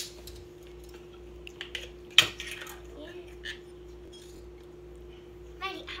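Metal measuring spoons clinking together as they are handled, with one sharp clink about two seconds in, over a steady low hum.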